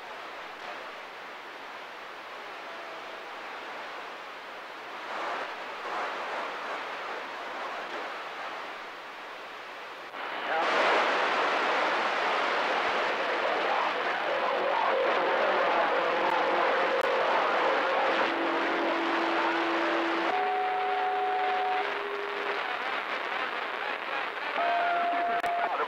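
CB radio receiver static: a low hiss, then about ten seconds in a strong signal opens the channel with loud, steady static. In the last several seconds steady whistle tones of different pitches come and go over the static.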